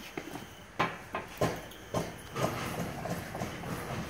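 About four sharp metal knocks and clunks in the first two seconds, then softer handling sounds, as the BX2763A snow blade's steel frame is moved and set onto its mount by hand. The tractor's engine is off.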